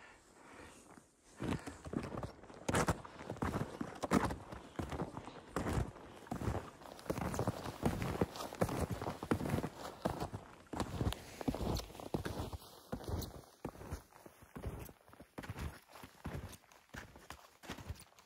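Footsteps of a person walking on snowshoes through snow, a steady rhythm of steps starting about a second and a half in.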